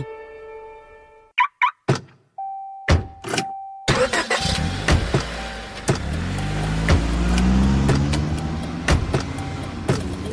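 Car sounds: a few sharp clicks, a steady beeping tone, then a car engine starting about four seconds in and revving up, with regular sharp ticks and a music bed.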